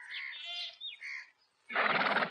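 Birds chirping in short quick calls, followed near the end by a brief loud rasping burst of noise.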